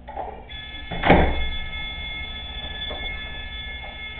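Glass-panelled front door being unlocked and opened: a click at the start, then a loud thunk about a second in and a lighter knock near three seconds, while a steady high tone holds from about half a second in.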